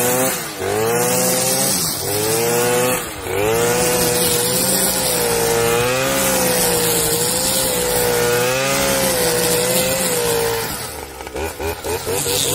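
Stihl brush cutter's two-stroke engine running at high revs while cutting long grass. Its pitch sags and recovers three times in the first few seconds, then holds steady with a slight waver. Near the end it drops off and turns uneven.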